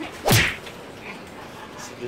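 A single quick whoosh about a third of a second in, sweeping across from low to high pitch and fading out fast.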